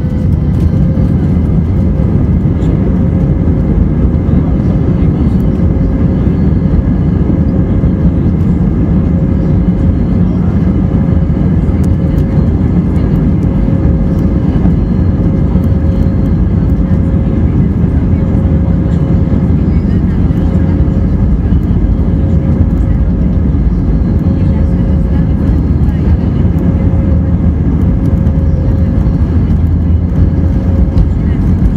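Airbus A320 cabin noise heard from a seat behind the wing while taxiing: a steady, even low rumble of the engines at low thrust and the airframe rolling, with a faint steady hum above it and no spool-up.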